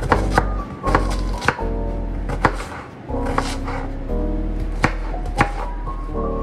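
Chef's knife chopping an onion: irregular, sharp knife strikes through the onion onto the cutting surface, with background music.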